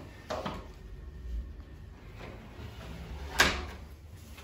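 Rubber squeegee drawn over wet window glass in quiet strokes, clearing off the slip solution, then a short sharp knock about three and a half seconds in.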